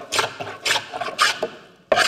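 Wooden scrub plane cutting an oak board in three quick, short strokes about half a second apart, its heavily protruding iron hogging off thick shavings from the high spots. A sharp click near the end.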